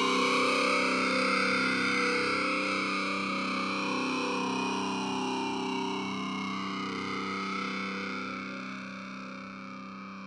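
Music: a held, distorted electric guitar chord ringing out with a slow swirling sweep from an effects unit, fading steadily.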